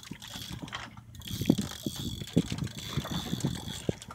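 A spinning reel being worked under heavy load on a big fish, giving irregular clicks and knocks, over water and wind noise.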